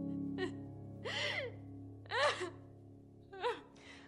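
A woman sobbing: four short, gasping, wavering cries over soft sustained background music, which fades out near the end.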